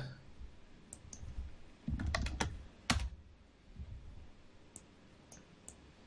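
Computer keyboard being typed on: a quick run of a few keystrokes about two to three seconds in, the last one the loudest, entering the word "THE", followed by a few fainter ticks.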